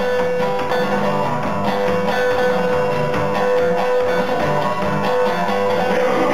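Acoustic guitar playing a Delta blues accompaniment, repeated low bass notes picked under a single steady high note that is held on.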